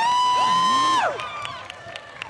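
A few spectators cheering a made basket with high-pitched yells, held for about a second, then fading away.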